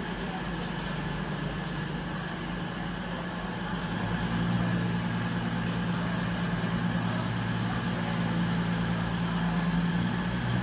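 Underfloor diesel engines of a Class 220 Voyager train running with a steady low hum; about four seconds in the engine note steps up and gets louder as the unit powers up to depart.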